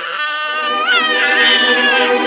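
Cartoon kitten character's long, loud angry wail: one held cry that lifts in pitch and grows louder about a second in.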